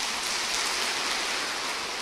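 Large audience applauding, a steady wash of clapping that holds and then begins to die away near the end.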